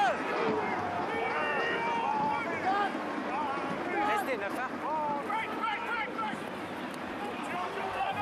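Scattered shouts and calls from rugby players around a ruck, over the steady noise of a stadium crowd.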